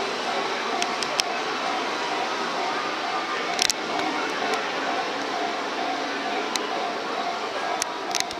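Railway station platform ambience: a steady murmur with faint held tones and a few sharp clicks.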